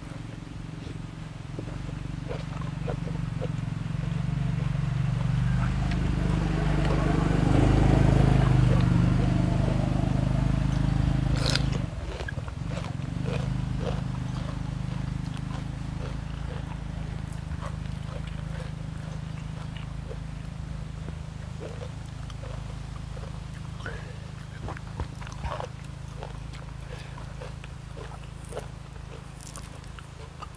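Close-up chewing and crunching of crisp food, heard as many small clicks. Under it a low steady rumble builds over the first ten seconds and drops off suddenly about twelve seconds in.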